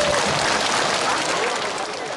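Audience applauding, with some voices mixed in, the sound fading away near the end.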